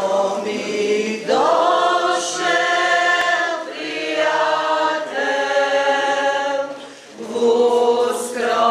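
Folk singing group, mostly women's voices, singing unaccompanied in several voices, in held phrases with short breaks between them and a brief dip about seven seconds in.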